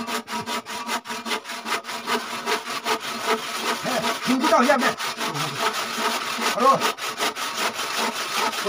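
Hand saw cutting through a wooden plank in quick, regular back-and-forth strokes.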